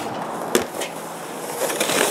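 Plastic saucer sled starting to scrape and slide over packed snow, the noise growing louder near the end, after a sharp click about half a second in.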